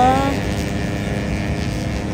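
Race motorcycles running around the circuit at a distance, heard as a steady engine drone over open-air ambience. A voice trails off with a rising pitch right at the start.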